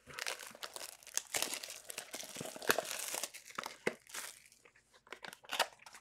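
Clear plastic shrink-wrap being torn and crinkled off a trading-card box: an irregular crackling rustle that dies away about four seconds in, followed by a few faint clicks.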